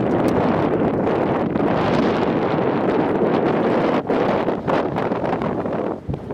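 Wind buffeting the camera microphone outdoors: a loud, steady rushing with a brief dip about four seconds in.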